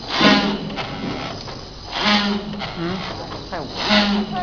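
DXDYQ-240 toothpick packing machine running in its cycle, a loud burst of noise about every two seconds, three times here, over a steady low hum.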